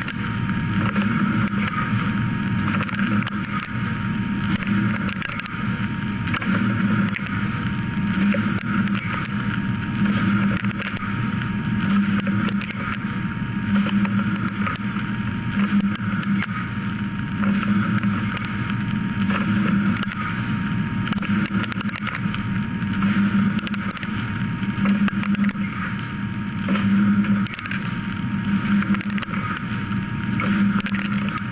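CNC machining center drilling steel with a half-inch Kennametal HPX drill at 130 inches per minute under flood coolant, hole after hole. The cutting sound swells and drops about every two seconds with each hole, over a steady hiss of coolant spray and a faint steady high tone.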